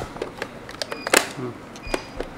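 A few sharp plastic clicks and knocks from white VR headset shells being handled, the loudest about a second in and another near the end.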